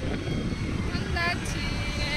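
Steady low rumble of a moving vehicle, with a brief distant voice about a second in.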